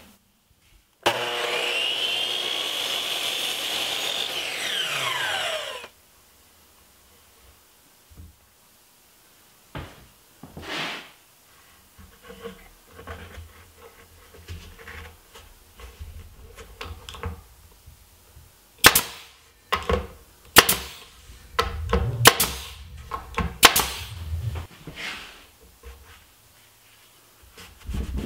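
Miter saw taking a light trim cut to shave a little more off a mitered piece: the motor whine rises as it spins up about a second in, runs steadily, then falls away as the blade coasts down about five seconds in. Later come scattered sharp knocks and rubbing as wood pieces are handled and pressed into place.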